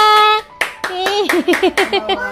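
Hands clapping quickly, about six claps a second, starting about half a second in, with voices sounding over the claps.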